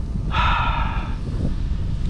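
A man's short, high-pitched groan of disappointment lasting under a second, starting about a third of a second in, after a bass has come off the hook. Steady wind rumble on the microphone runs underneath.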